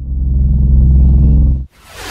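Propeller-plane engine sound effect: a loud, low, steady drone that swells in over the first half-second and cuts off abruptly near the end, followed straight away by a whoosh.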